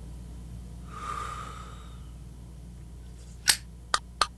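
A man breathing out a long, breathy puff of cigar smoke about a second in. Near the end come two sharp clicks, over a low steady hum.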